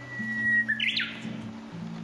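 Guitar music with recorded bird song over it. A bird holds a thin steady whistle, then gives a quick rising call about a second in, the loudest moment.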